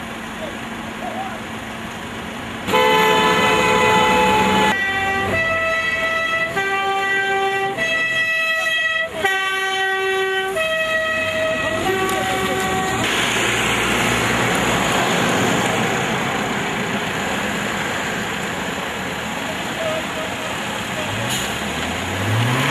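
A vehicle horn sounding a run of steady notes at changing pitches for about ten seconds, loud over the idling traffic, followed by a steady rush of road noise.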